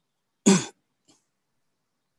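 A single short, sharp cough from a person, followed about half a second later by a faint small sound.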